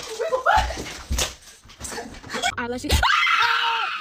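A few heavy thuds in the first three seconds, then a loud, drawn-out scream from about three seconds in to the end.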